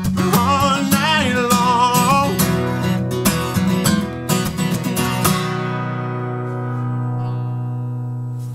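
Acoustic guitar strummed in an upbeat rhythm under a male voice singing. The singing stops about two and a half seconds in, the strumming goes on briefly, and about five seconds in a final chord is struck and left to ring out, closing the song.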